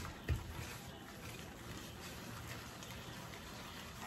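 Faint wet squishing of a gloved hand working soft butter, sugar and cream cheese together in a ceramic bowl, with a soft knock about a third of a second in.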